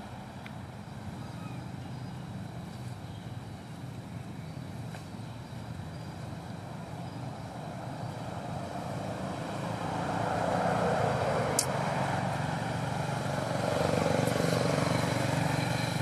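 A motor vehicle engine running nearby with a steady low hum, growing louder twice in the second half as it passes or revs, with a single sharp click partway through.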